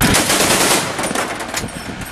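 Truck-mounted heavy machine gun firing rapid automatic fire, loudest at the start and trailing off toward the end.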